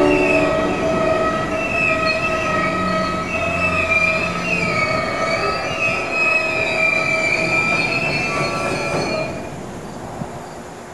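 Wheels of a passing BNSF coal train's cars squealing on the rail: several high, wavering squeals over the rumble of rolling wheels. The squeal dies away about nine and a half seconds in.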